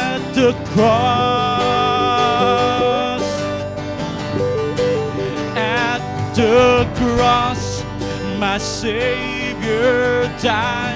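A choir singing a worship song with guitar accompaniment, holding long sung notes with a wavering pitch.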